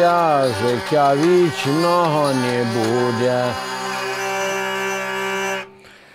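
Ukrainian lira (hurdy-gurdy) sounding a steady drone while a man sings a wavering, sliding melody over it. The singing stops a little past halfway; the drone carries on alone and cuts off shortly before the end.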